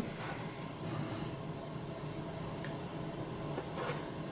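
Steady room noise, a low hum with a soft hiss, and a few faint light clicks.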